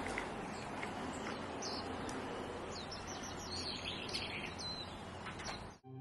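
Small birds chirping over a steady outdoor background hiss, with a run of short, high calls through the middle. The sound cuts off abruptly just before the end.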